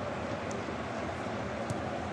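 Football stadium crowd noise: a steady, even murmur from the stands with no single voice standing out.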